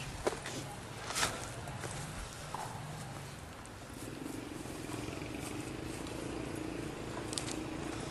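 Handheld-camera handling and footsteps on dry ground and brush, with a few sharp clicks and a faint steady hum coming in about halfway through.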